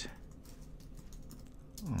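Computer keyboard typing: a few light, irregular keystrokes.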